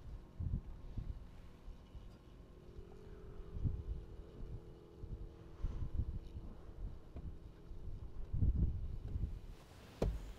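Wind buffeting the microphone in irregular low gusts, strongest about three and a half, six and eight and a half seconds in, with a faint steady hum from about three to eight seconds in.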